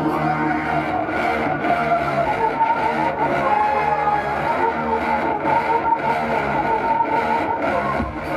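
Live electronic music played loud through a concert PA, with a steady low bass part and a high lead melody that moves up in pitch about two seconds in.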